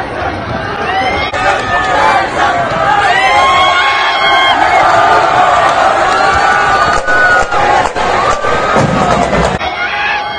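Arena crowd cheering and shouting, many voices overlapping, with high voices calling out loudest a few seconds in.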